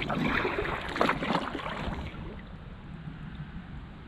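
Kayak paddle strokes in river water: two splashing strokes in the first two seconds, then fainter water sounds as the kayak glides.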